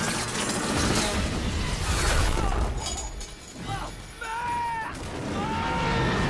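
Film action sound effects: a drone hit by machine-gun fire breaking apart, with a loud crash and shattering debris for about the first three seconds. After that it is quieter, with a few short gliding tones near the end.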